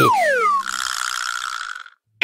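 Cartoon sound effects: a falling whistle-like tone, then a buzzing, ratchet-like rattle that lasts about a second and fades out.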